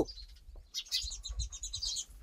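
Small birds chirping faintly in the background, starting a little under a second in, over a low steady rumble.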